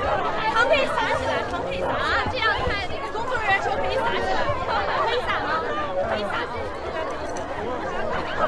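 Crowd of people chattering and calling out over one another, many voices overlapping with no single voice standing out.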